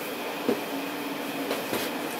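Steady background hum with a constant low tone, and two light taps about a second apart.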